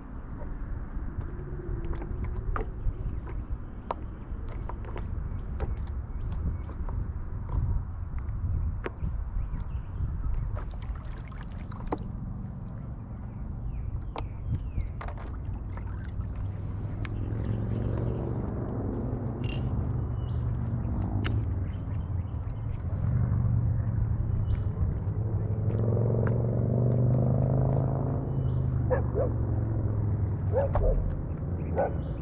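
Wind noise on the board-mounted camera's microphone, with water lapping against the paddleboard, growing louder in the second half. Scattered light clicks run through it, with short high chirps from about halfway.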